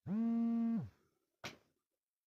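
A man's voice humming one steady, held note for just under a second, dipping in pitch as it ends, followed by a short click about a second and a half in.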